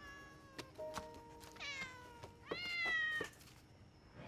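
Domestic cat meowing twice: a first meow about a second and a half in, then a louder, longer one near the end.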